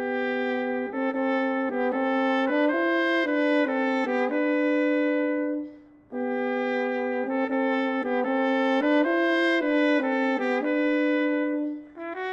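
Solo trumpet playing a slow melody note by note in two phrases, each ending on a held note, with a short break for breath about six seconds in.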